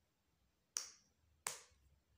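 Two sharp snaps about three-quarters of a second apart, each dying away quickly.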